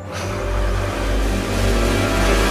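Dramatic TV background-score effect: a steady low drone under a dense rushing noise that swells up in the first half second, then holds.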